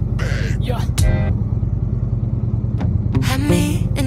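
Motorcycle engine running steadily while riding, a continuous low rumble, mixed with background music that has short pitched passages.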